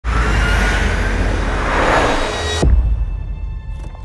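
Cinematic trailer sound design: a loud, dense rushing swell over a deep rumble that cuts off suddenly about two and a half seconds in on a low hit, leaving quiet held tones and faint ticks.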